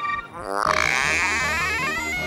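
A cartoon transition sound effect: a falling glide, then a warbling tone that rises in pitch. Children's background music with a bass beat comes in about half a second in.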